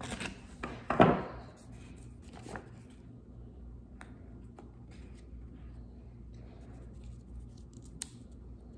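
Scissors cutting construction paper in a few quick strokes during the first few seconds, the loudest about a second in. A single sharp click follows at about four seconds, then faint paper handling.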